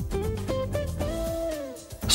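Background music: a guitar plays a short phrase of single plucked notes, one of them held and bent down in pitch, fading near the end.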